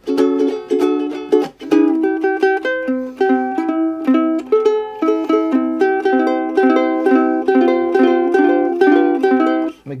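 A small vintage ukulele played solo: quick repeated strummed chords for the first few seconds, then a picked melody over chords in an even rhythm, stopping just before the end.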